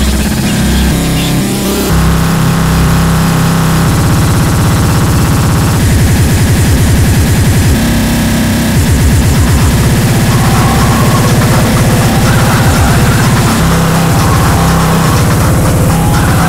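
Loud, heavily distorted splittercore electronic music. The kick drums are so fast that they run together into a buzzing drone, and the texture shifts a few times.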